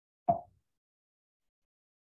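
A single short, sudden sound about a third of a second in, dying away within a quarter second.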